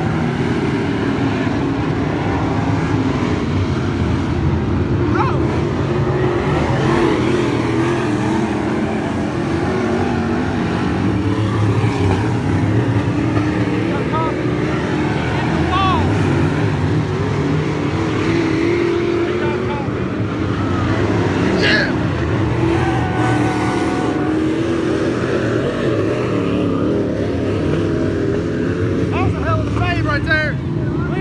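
Pack of dirt-track limited late model race cars with steel-block V8 engines running at racing speed around the oval, their engines overlapping in a steady, continuous drone as the field circles.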